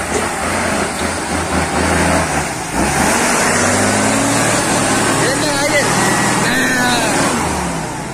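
Loaded cargo truck's engine labouring through deep mud at low speed while passing close. The revs and loudness rise about three seconds in.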